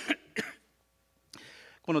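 A man's brief throat-clearing, then a short silence and a faint breath in before he speaks again near the end.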